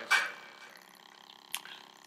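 A man's short mouth and breath noises in a pause between phrases: a brief breathy vocal sound just after the start and a small click about one and a half seconds in, over quiet room tone.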